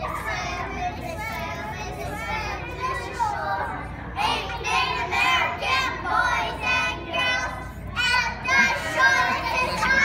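A group of young children singing a Thanksgiving song together, getting louder about four seconds in.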